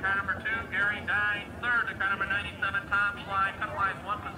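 A man's voice talking continuously, thin and indistinct, with no clear words: race announcing.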